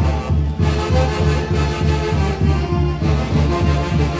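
Loud, lively band music for a Santiago festival dance, with a steady, evenly pulsing bass beat under held melody notes.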